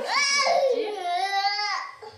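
A toddler's high-pitched whining cry, ending in one long wavering wail: impatience for the bottle.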